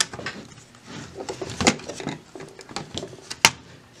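Irregular plastic clicks and knocks from an HP x360 laptop's bottom casing being handled and lifted away from the chassis, with one sharp snap near the end.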